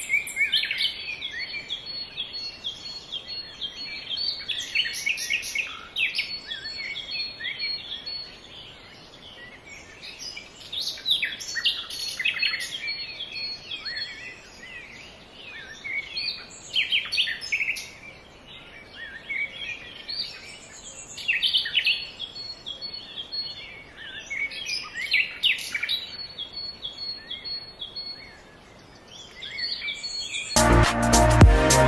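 A chorus of small birds chirping and twittering: many short high calls, overlapping densely, thinning out briefly a few times.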